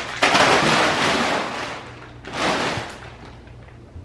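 A body sliding fast along a wet plastic-tarp slip 'n slide: a loud rushing slide of about two seconds that fades, then a second, shorter rush.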